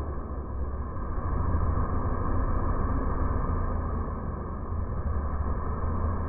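Backpack leaf blower running steadily as it clears a wet sidewalk.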